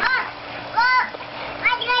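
A toddler's high-pitched "oh" squeals, three of them, each rising and falling in pitch, with water splashing in shallow pool water.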